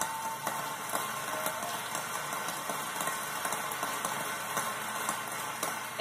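A large conference audience applauding steadily, heard through a television's speaker.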